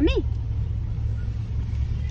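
Steady low rumble of a car heard from inside the cabin while it drives, after a child's brief 'yummy' at the very start.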